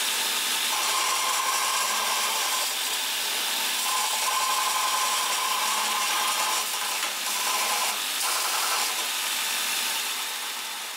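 Sorby ProEdge belt sharpener running, its 120-grit abrasive belt grinding a bowl gouge held in a jig. The grinding note swells and eases in strokes of a second or two as the gouge is swung across the belt.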